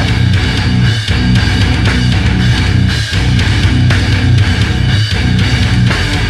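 Heavy metal band playing an instrumental passage, electric guitars to the fore, with a riff that breaks off briefly about every two seconds.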